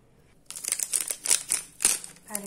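Crinkling and crackling of a small Nescafé Sunrise instant-coffee sachet being handled, torn open and emptied into a steel bowl. It starts about half a second in as a quick, irregular run of sharp crackles, the loudest near the end.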